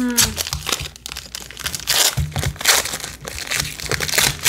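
Foil trading-card pack wrapper being crinkled and torn open by hand, a quick run of sharp crackles and rustles.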